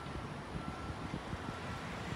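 Steady outdoor background noise, a low rumble and hiss that may be light wind on the microphone, with a faint thin tone coming and going.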